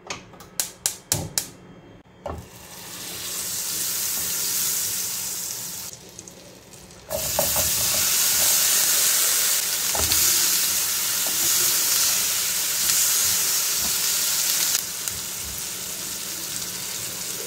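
A quick run of about six sharp clicks, then butter sizzling in a hot non-stick frying pan. After a short break, diced tomato fries in the bubbling butter with a louder, steady sizzle that eases a little near the end.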